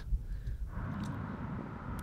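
Outdoor background noise: a steady low rumble, joined about two-thirds of a second in by a hiss.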